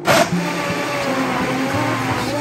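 Vitamix blender switching on abruptly with a loud first burst, then running steadily as it purées chunks of pumpkin and vegetables in broth into a smooth soup.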